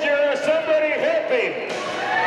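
A man's voice talking loudly without a break, the words unclear.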